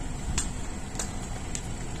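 Steady low rumble of city buses running in a bus interchange, with sharp short ticks about every 0.6 s.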